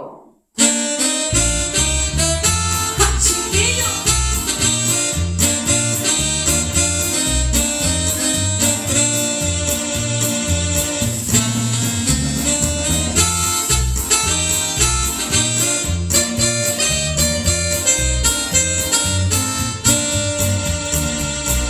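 Instrumental introduction of a Mexican ranchera, starting about half a second in: electronic keyboard melody and electric bass over a steady drum beat.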